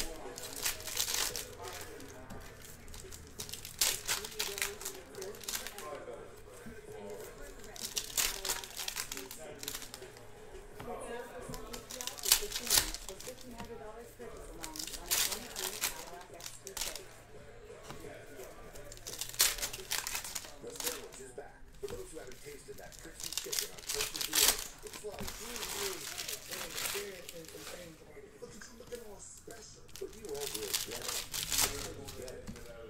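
Foil Panini Revolution trading-card packs being torn open and handled, giving repeated bursts of crinkling and tearing foil.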